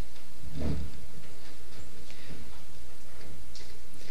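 Quiet meeting-hall ambience over a steady low hum, with faint scattered ticks and one soft low thump a little over half a second in, as people move about on a stage.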